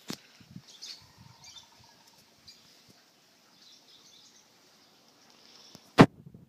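Faint bird chirps scattered through quiet outdoor ambience, with a click just after the start and a loud sharp click at the very end.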